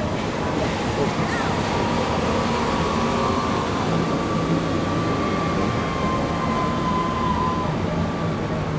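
Steady rush of wind and sea water from the deck of a moving ship, with a low steady hum underneath.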